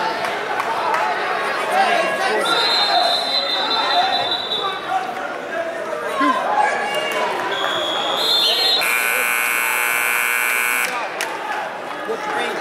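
Electric scoreboard buzzer sounding for about two seconds and cutting off suddenly, marking the end of a wrestling period, over crowd chatter in a gym.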